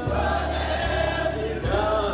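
Choir singing a gospel hymn in long held notes, the chord shifting about a second and a half in, over a steady low bass.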